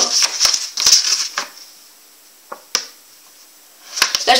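A folded sheet of paper rustling and crinkling as it is handled and opened out, then two small clicks a moment apart past the middle.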